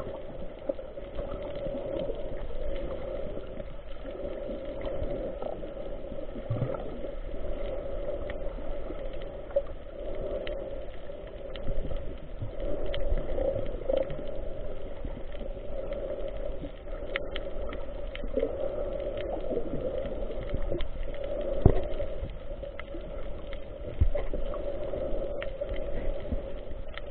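Muffled underwater sound picked up by an action camera in its waterproof housing: a steady low wash with scattered faint clicks and a louder knock about 22 seconds in.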